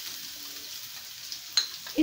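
Chopped onion sizzling steadily in hot oil with tempered mustard seeds, cumin and green chilli in a frying pan. There is one light click about one and a half seconds in.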